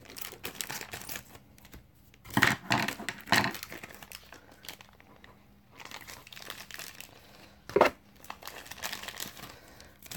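Packaging crinkling and rustling as a mail package of trading cards is unwrapped by hand, with a cluster of louder crackles a couple of seconds in and one sharp crackle near the end.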